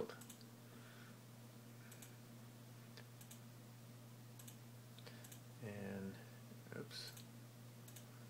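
A few faint, separate computer mouse clicks, a second or so apart, as letters are picked on a flight-simulator's on-screen keyboard, over a steady low hum.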